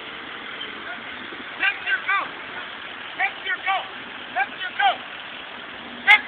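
A distant voice shouting in three short clusters of two or three unintelligible syllables. Underneath is a steady rush of roadside traffic and wind noise.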